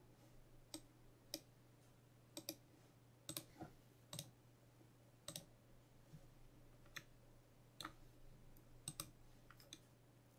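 Faint, irregularly spaced clicks of a computer mouse, a dozen or so, over near silence.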